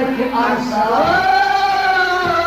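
Kashmiri Sufi folk song: a man's singing voice ends a phrase, then holds one long steady note from about a second in.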